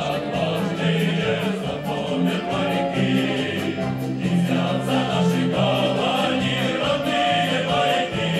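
A male choir of sailors singing a song together, in held chords.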